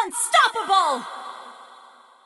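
Short logo sting: about four quick falling pitched sweeps in the first second, then a long echoing tail that fades out.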